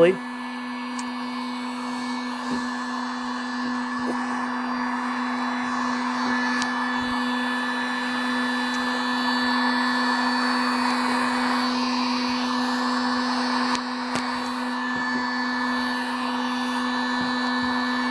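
Harbor Freight electric heat gun running steadily, a constant hum with a rush of blown air, as it heats the end of a PEX pipe to soften it for fitting onto PVC. A few faint knocks from the pipe being handled.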